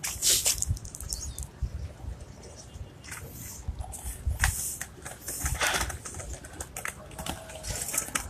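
Irregular low rumble of wind and handling on a handheld phone microphone, with scattered faint clicks and short hissy bursts.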